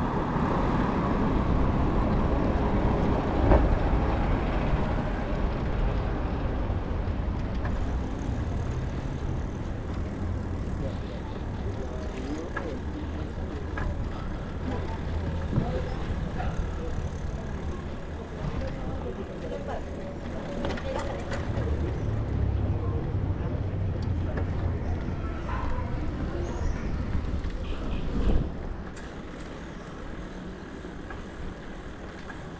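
Road traffic, including a truck, heard from a bicycle riding along a city street: a steady low rumble, with a sharp knock about three and a half seconds in and the noise falling away shortly before the end.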